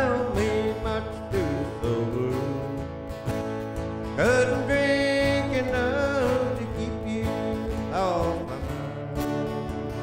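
Two acoustic guitars strumming a slow country song, with a man's singing voice coming in about four seconds in and again near eight seconds.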